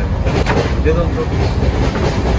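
Passenger train running, a steady low rumble heard from inside the coach, with faint voices over it about half a second to a second in.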